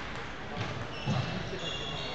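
Table tennis rally: the celluloid/plastic ball clicking off paddles and the table, with two sharper knocks about half a second and a second in, over the echoing chatter of a large gym hall.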